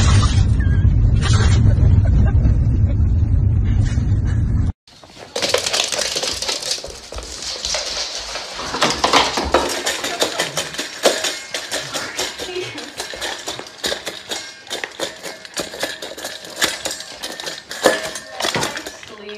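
A husky calling out in a moving car over a steady low road rumble. After a sudden cut, a dog eats from a stainless steel bowl, with rapid clinks and scrapes of the metal bowl.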